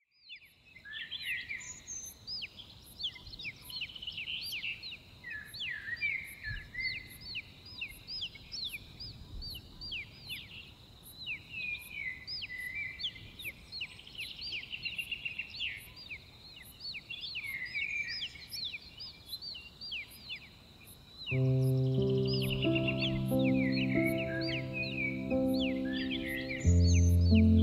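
Many small birds chirping and calling with quick rising and falling notes, fading in at the start, over a faint high ticking about twice a second. About 21 s in, soft sustained music chords come in beneath the birdsong.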